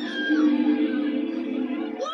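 A recorded live concert clip playing back: music with one steady, held note.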